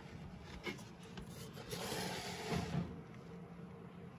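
Faint rubbing and handling noise, with a soft swell of rustling about two seconds in.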